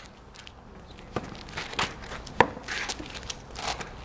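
A short rally: three sharp knocks of racket strings on ball and ball on asphalt, about a second in, just under two seconds in, and the loudest about two and a half seconds in.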